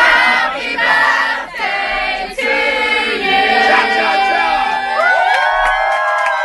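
A group of young people singing loudly together: many voices at once, held and sliding notes overlapping.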